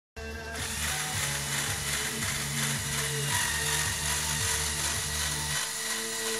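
LEGO Technic trail jeep's electric motors and plastic gear train whirring and clicking as it crawls up onto a log. A low hum with regular short breaks stops about five and a half seconds in.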